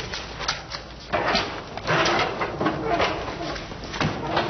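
Studio audience laughter from a sitcom laugh track, swelling about a second in and carrying on.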